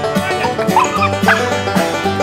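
Background music with a steady beat, with a puppy yipping twice over it, about a third and two-thirds of the way through.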